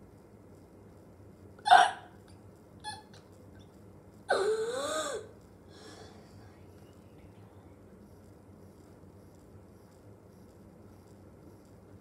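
A person's voice, without words: a short, sharp vocal sound about two seconds in, a fainter one a second later, then a wordless vocal sound of about a second whose pitch slides up and down.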